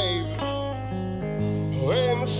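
Live country blues: a man singing over guitar. A sung phrase ends at the start, guitar notes ring on between phrases, and a new vocal phrase slides up near the end.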